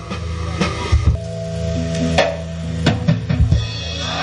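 Church band music: a drum kit playing scattered hits and fills over held low bass notes and sustained chord tones.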